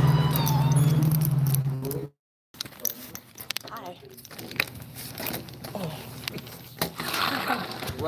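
A loud steady low hum for about two seconds that cuts off suddenly into a half-second of dead silence, followed by quieter office sound: faint distant voices and scattered clicks and rustles of a phone being handled.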